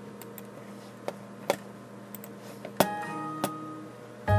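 Several sharp computer mouse clicks. About three seconds in, a short computer alert chime of several tones rings for about a second, signalling a software warning about the stair's railing not being continuous.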